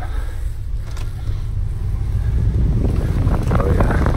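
Wind buffeting the camera microphone over the steady low rumble of a ship underway, with jacket fabric rubbing against the mic. It grows louder and rougher about three seconds in.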